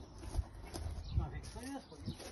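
A man's voice speaking a few words, with a few short low thumps.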